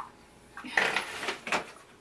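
A bag rustling and crinkling in a scratchy burst for about a second, starting under a second in; the noise is mistaken for a fart. A short high chirp sounds at the very start.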